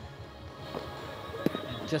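Cricket bat striking the ball once, a single sharp knock about a second and a half in, over low stadium background.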